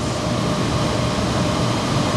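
Textile carbon brushing machine, the kind that brushes fabric to a peach-skin finish, running with a steady dense mechanical din and a faint steady hum-tone through it.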